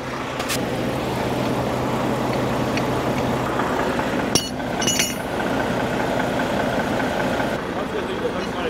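Volvo semi truck idling steadily close by, a steady engine hum under a broad fan-like rush. A couple of sharp metal clinks come a little after halfway, and the rush drops off just before the end.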